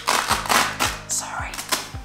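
Velcro hook-and-loop flap on a camera bag ripped open the ordinary way, a crackling tear in several quick pulls.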